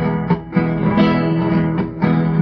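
Guitar accompaniment to a tango song playing the instrumental lead-in, plucked notes and strummed chords, with a short dip in loudness about half a second in.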